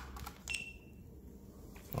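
Clicks of fingers working a GoPro Hero 7 action camera's buttons, then about half a second in a single short high beep from the camera, its signal that it has started recording.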